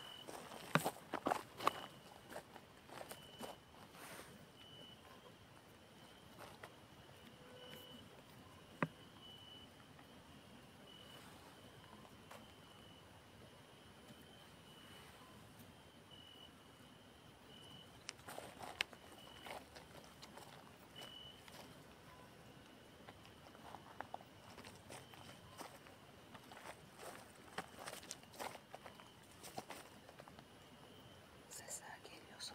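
Faint footsteps crunching on a gravel track, in clusters near the start and again through the second half, over a thin, steady high-pitched tone that keeps breaking off and resuming.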